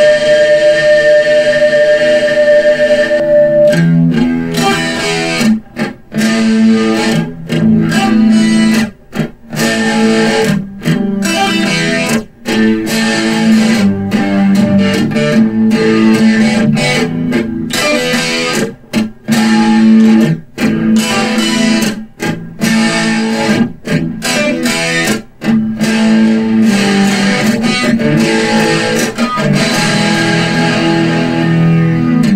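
Electric guitar played solo in a rock style: one note held for the first few seconds, then chords broken by many short, sudden stops.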